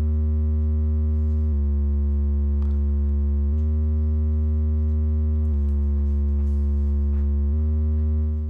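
Sustained low tone from the Noise Reap Foundation kick drum module, held open by a long gate. It steps back and forth by a semitone between D sharp and D about every two seconds as its nudge input switches on and off.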